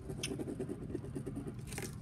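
A pen scribbling back and forth across a sheet of lined notepaper in quick, irregular strokes, with one brief tick near the start.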